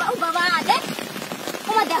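Steady rain hiss with running water, heard under women's voices.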